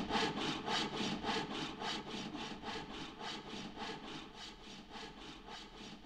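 Hand frame saw cutting wood in quick, even strokes, about five a second, fading toward the end.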